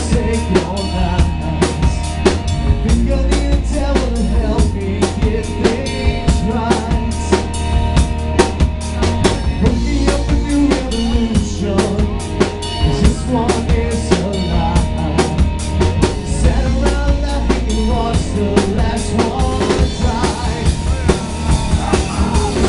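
Live rock band playing loud, with a drum kit's kick and snare keeping a steady driving beat under electric guitar and bass guitar.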